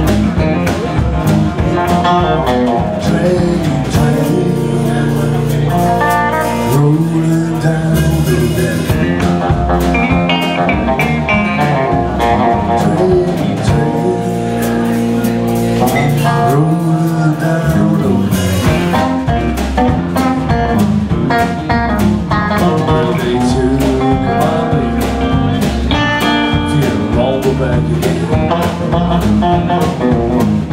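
Live blues band playing an instrumental passage on electric guitars with drums; twice, long chords are held and ring out.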